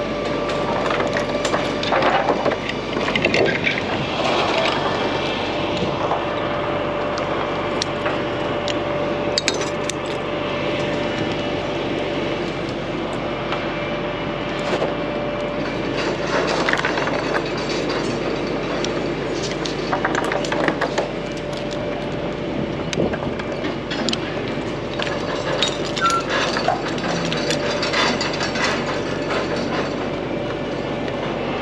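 Steel lifting chain and hook clinking and knocking against timber roof trusses as they are handled, with wood knocks in between, over a steady machine drone.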